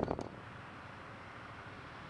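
Faint, steady traffic noise: an even low rumble and hiss, with a few soft clicks at the very start.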